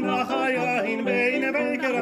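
Three male cantors, a tenor, a baritone and a bass, singing together in harmony, their voices held with a wavering vibrato.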